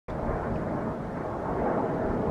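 Wind buffeting the microphone outdoors: a steady, low rumbling noise with no clear tones or distinct events.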